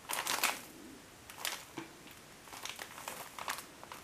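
Plastic biscuit packaging crinkling as it is handled, in several short rustles: one at the start, one about one and a half seconds in, and a run of them over the last second and a half.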